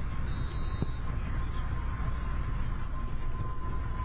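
Outdoor soccer-field ambience: a steady low rumble with a faint steady high tone, and one sharp knock a little under a second in from a soccer ball being kicked.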